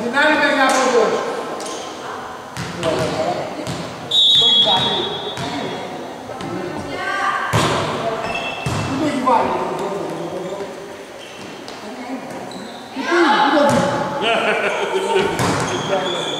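Volleyball play in a reverberant sports hall: players' voices shouting and calling, with sharp ball hits. A single whistle blast of about a second comes about four seconds in.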